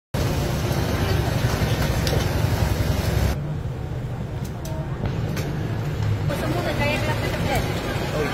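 Loud outdoor background noise with a steady low rumble, of the kind traffic makes. It changes abruptly twice, as the footage cuts. Voices come in over the last couple of seconds.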